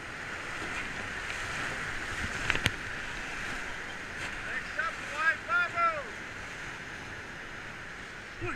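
Whitewater rapid rushing steadily around an inflatable raft, heard as an even hiss of water. A sharp knock sounds about two and a half seconds in, and a person's shouts rise and fall around the middle of the clip.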